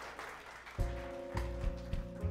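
Applause dying away as a Kurzweil PC2 stage keyboard begins a song intro, with held chords over a low bass note starting about a second in.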